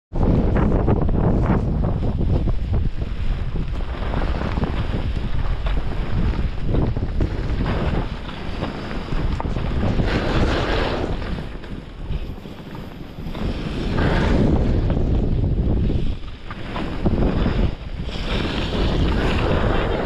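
Wind rushing over the microphone while skiing downhill, with the hiss of skis on snow swelling and easing through the turns.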